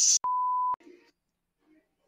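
A censor bleep masking a swear word: a single steady high beep, about half a second long, cut in abruptly with a click at each end just after a shouted "sh" sound.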